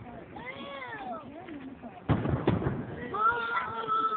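Two aerial firework shells bang about half a second apart, halfway through. Around them come drawn-out, rising-and-falling human calls, and a long, slowly falling call starts about three seconds in.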